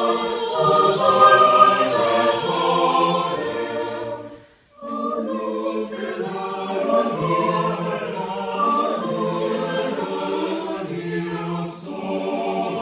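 Mixed choir singing a cappella in several parts, sustained chords moving from note to note. About four and a half seconds in the singing breaks off for half a second, then resumes.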